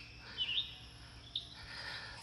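A bird chirping twice in the background, short high chirps about half a second in and again near the middle, over a quiet outdoor backdrop.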